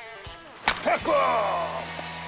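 One sharp crack of a baseball bat hitting a softly tossed ball, followed at once by a man's loud shout.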